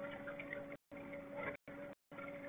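Water lapping against the hull of a small fishing boat, over a steady low hum. The sound cuts out completely for a moment twice.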